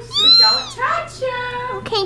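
A child's high-pitched wordless squeal that rises and falls, followed by a steady held vocal note, from excitement.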